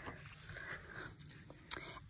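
Faint paper rustle of a paperback picture book's page being turned and laid flat, with a soft tap near the end.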